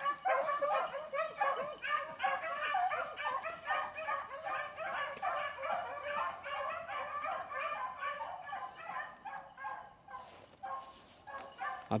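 A pack of beagles baying in chorus while running a rabbit, many voices overlapping without a break, thinning out about ten seconds in.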